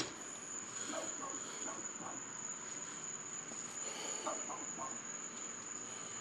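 A dog barking faintly and muffled from inside a closed house, a few barks about a second in and again around four seconds in, over a steady high insect trill.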